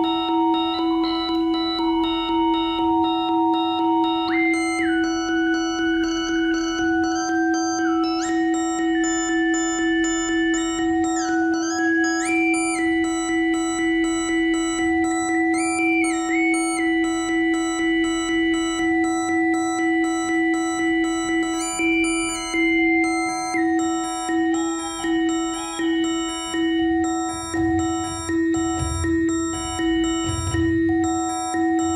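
8-bit synthesizer playing electronic music: a steady low drone under higher held tones that jump and slide between pitches, with a regular pulsing throughout that grows more pronounced about two thirds of the way in.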